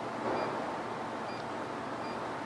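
Two faint, short beeps from a Delem DA-53T CNC press brake control's touchscreen as digits are keyed in, about a second apart, over a steady background hiss.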